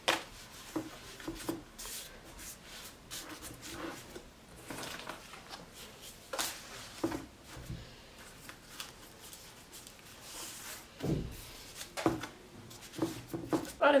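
Thin sheets of hand-rolled baklava dough rustling and crinkling in short, irregular bursts as they are handled and smoothed into a metal baking tray, with a soft thump about eleven seconds in.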